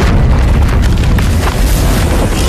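Sound effect for a giant magical energy attack in an animation: a deep, continuous booming rumble with crackling streaks over it, with score music underneath.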